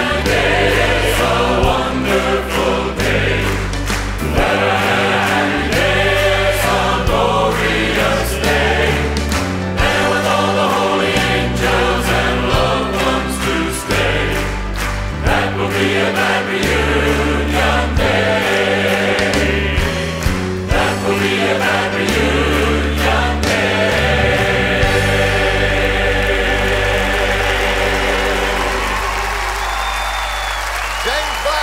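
Live Southern gospel singing: a group of male voices and a full choir with piano and band, over a steady beat. In the last few seconds it settles into one long held final chord.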